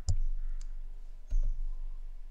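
A few sharp clicks of a computer mouse with low thumps on the desk near the microphone: some near the start, one about half a second in, and a pair around a second and a half, over a faint low hum.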